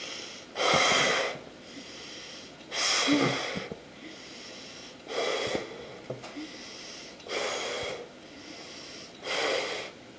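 A person blowing up a balloon by mouth: five long puffs of breath into it, about two seconds apart, with quieter breathing in between.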